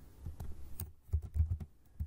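Typing on a computer keyboard: a quick run of separate keystrokes, with a brief lull about a second in.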